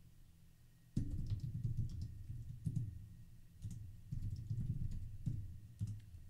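Typing on a computer keyboard: a run of keystrokes with dull thuds begins about a second in and goes on in quick bursts.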